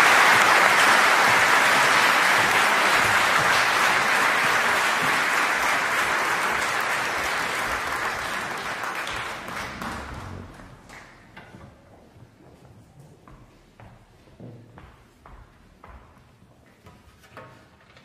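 Audience applause, loud at first and dying away over about ten seconds. After that, only a few scattered claps and small knocks remain.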